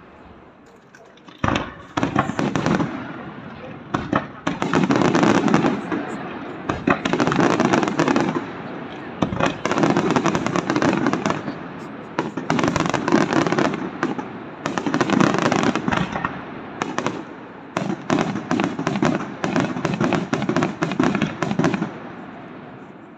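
Aerial fireworks display: shells bursting overhead with dense crackling from crackle stars. A few separate bangs in the first seconds, then waves of rapid popping and crackling every couple of seconds, growing thickest near the end.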